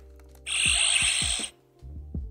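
Hasbro Lightning Collection Power Morpher giving off a harsh, hissing electronic sound for about a second, starting and stopping abruptly, as the Triceratops coin is locked in. Background music plays throughout.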